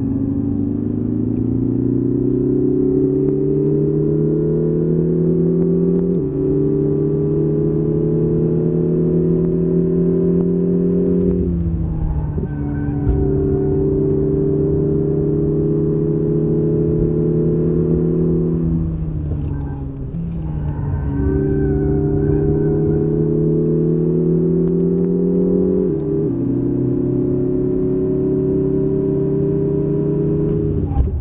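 Lexus IS 300h F-Sport's 2.5-litre four-cylinder hybrid petrol engine under hard acceleration, heard from inside the cabin. Its pitch climbs steadily and steps down abruptly several times, holds level for a few seconds, and eases off briefly about twenty seconds in.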